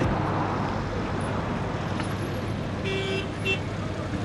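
Steady road traffic noise, with a vehicle horn tooting briefly, twice in quick succession, about three seconds in.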